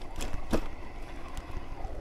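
Ride noise from an e-bike in motion: a low rumble of wind on the microphone and tyres rolling along a path, with a few faint ticks and knocks.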